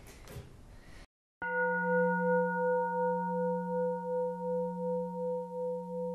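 After a second of faint room tone and a brief dead silence, a deep bell-like tone is struck about a second and a half in and rings on steadily, its loudness wavering in a slow pulse.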